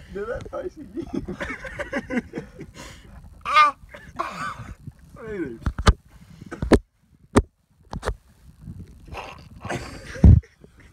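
Indistinct, mumbled talk close to the microphone, with four sharp clicks a little past the middle, between which the sound twice cuts out briefly.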